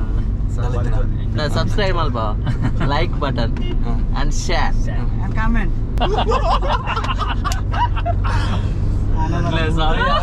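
Men talking inside a moving car cabin, over a steady low engine and road rumble.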